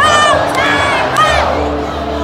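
A young boy's high-pitched shouts, three short ones in quick succession in the first second and a half, over a stadium crowd cheering and the song playing on the stadium speakers.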